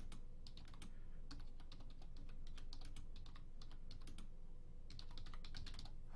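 Typing on a computer keyboard: a run of quick, irregular key clicks with a short lull a little past halfway, over a faint low hum.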